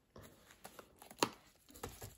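Plastic zipper pouch and ring binder being handled: light rustling and scattered small clicks, with one sharper click just past the middle.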